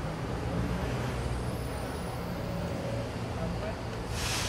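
Busy street ambience: a steady low rumble of traffic with the indistinct chatter of passers-by.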